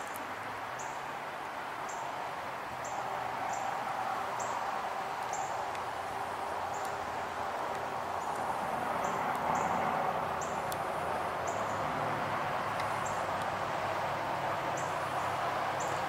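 Steady outdoor background noise with a small bird giving short, high chirps, about one a second, pausing for a few seconds near the end.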